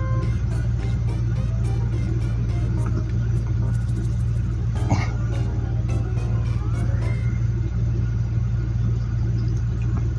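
Steady low engine rumble from a large SUV on the street ahead, with background music laid over it.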